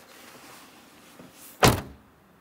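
Cab door of a kei light truck being shut: one sharp, loud thump near the end.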